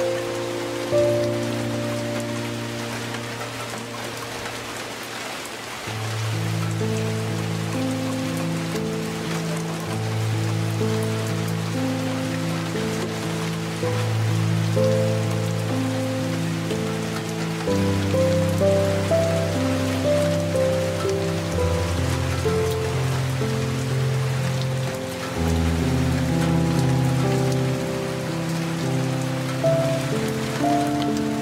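Light rain falling steadily under soft, slow piano music, with low held notes and chords changing every few seconds.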